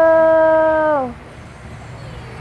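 A person's long, drawn-out "whoa", held on one steady pitch, then dropping in pitch and stopping about a second in.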